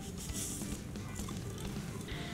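Quiet background music with faint steady tones. About half a second in there is a brief soft hiss of dry sand pouring from a cup onto a paper towel.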